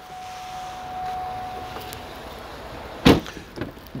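A low, steady background rush, then a single loud thump of a 2013 Cadillac Escalade's door shutting about three seconds in.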